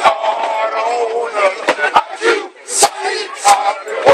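A group of men chanting in unison in a fraternity step routine, punctuated by sharp stomp and clap beats roughly once a second.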